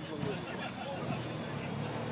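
Police BMW RT-P motorcycle's boxer twin running at low speed as it is ridden slowly down the street, a steady low hum.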